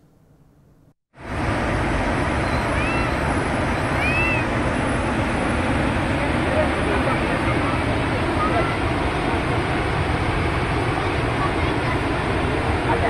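Floodwater rushing down the spillway of the Srisailam dam through ten crest gates raised ten feet to release a heavy flood. It is a loud, steady rush that begins abruptly about a second in.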